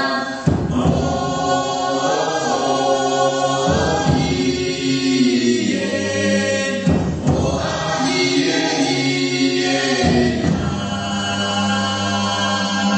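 Taiwanese Indigenous choral singing: many voices holding long chords together. A new chord starts about every three seconds.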